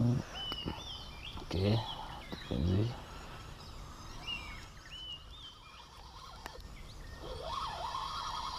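Birds calling from the riverside rainforest: a phrase of short high whistles that step up and down in pitch, heard twice. A person's low voice sounds briefly twice in between, and a lower warbling call comes near the end.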